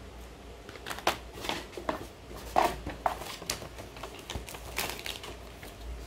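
Plastic and foil snack wrappers crinkling as they are handled, in a string of irregular crackles and ticks.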